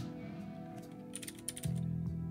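Computer keyboard typing: a quick run of keystrokes a little after a second in, over soft background music with held tones.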